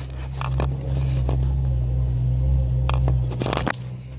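A steady low hum with scattered scrapes and clicks close to the microphone, as the hand-held camera and hand move among wiring in the engine bay.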